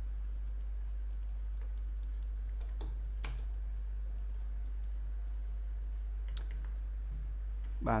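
Scattered computer mouse and keyboard clicks while a CAD drawing is edited, with a slightly stronger click about three seconds in, over a steady low hum.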